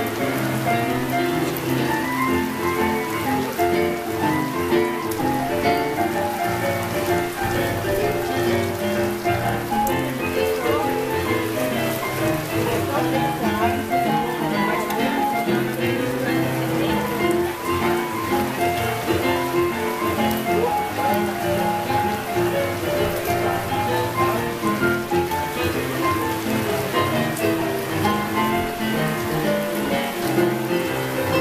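Two digital pianos playing an instrumental boogie-woogie blues passage: busy, quickly changing piano notes with no pause, over a steady hiss.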